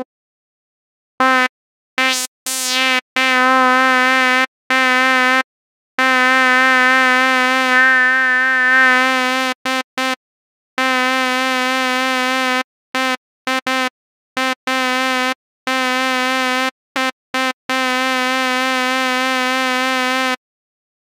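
A Reason 9 Malström synthesizer patch built on a sawtooth oscillator to imitate a shehnai. The same reedy, edgy note is played over and over, some as short taps and some held for a few seconds, with a slow wobble in pitch. Its tone shifts slightly as the filter resonance and envelope are adjusted, and it brightens briefly about eight seconds in.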